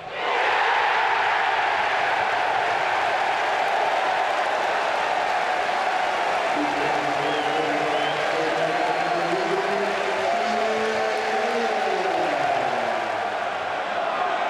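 Stadium football crowd cheering and applauding as a goal goes in, the noise surging at once and holding steady. From about halfway through, wavering sung lines rise above the cheering as fans take up a chant.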